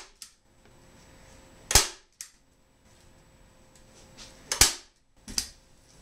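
Manual staple gun driving staples through fabric into a chair seat board: two loud sharp snaps about three seconds apart, with a few fainter clicks between them.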